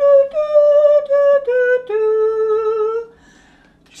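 A single voice humming the hymn melody in held, steady notes, rising and then falling, before the unaccompanied singing begins; it stops about three seconds in.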